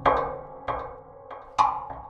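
Omnisphere's "Drumming Inside the Piano" patch played: woody, percussive struck hits on piano strings and body, each ringing out with a tone and a reverb tail. Four hits, the third faint, coming irregularly.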